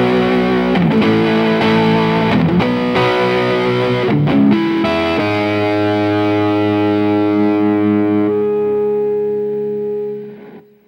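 Distorted electric guitar playing a run of changing notes, then one final chord struck about five seconds in and left ringing, beginning to fade near the end.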